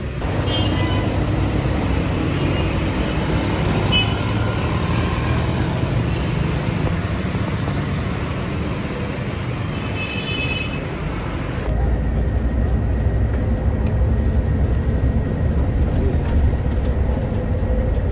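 Steady road traffic noise. From about twelve seconds in it gives way to the steady, deeper rumble of a city bus heard from inside its cabin while it is moving.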